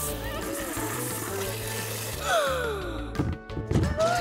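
Cartoon sound effect of a fire-hose water jet hissing over background music, followed by a falling whistle-like glide and a few sharp knocks near the end as a traffic cone is knocked over.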